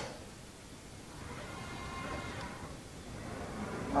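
Faint, steady whine of a CNC rotary tube cutter's drive motors as the machine moves through its automatic program. It comes in about a second in and fades out after about three seconds.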